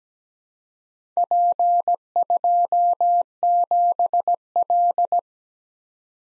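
Morse code practice tone: a single steady-pitched beep keyed in dots and dashes, sending the four-character group P-2-7-L. It starts about a second in and stops about a second before the end.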